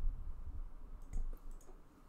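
A few faint clicks over a low, steady background hum.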